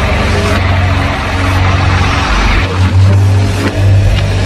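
Heavily distorted doom/sludge metal: down-tuned guitar and bass droning on sustained low notes, with a couple of cymbal crashes in the first two seconds.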